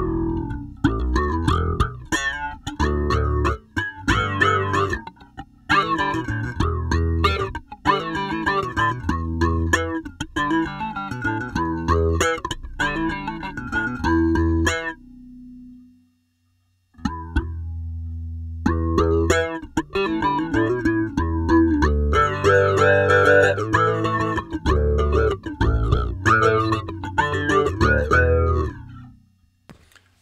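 Electric bass played through a 'Bass Cry' filter effect: a bass line of plucked notes with the filter shaping each note. The playing breaks off briefly about halfway through, then picks up again.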